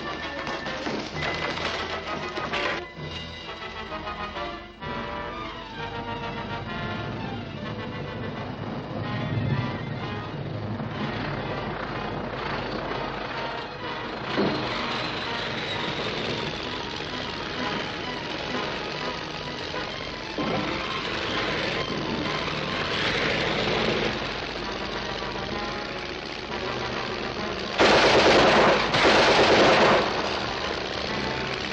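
Dramatic orchestral serial score with bursts of rapid gunfire mixed in, and a loud noisy burst about two seconds long near the end.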